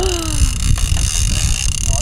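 Steady low rush of wind and sea noise aboard a sailboat under way. Right at the start a person's voice gives a drawn-out exclamation that falls in pitch.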